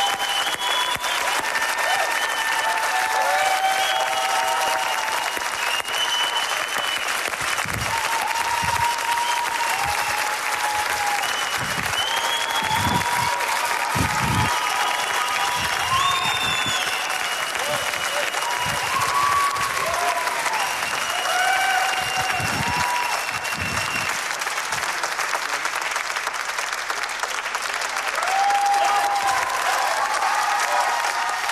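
Studio audience applauding steadily and at length, with voices calling out over the clapping.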